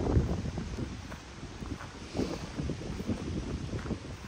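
Wind buffeting the camera's microphone outdoors: a low, uneven noise with no distinct events.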